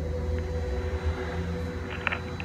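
A steady low rumble with a thin, steady hum above it, like a distant engine.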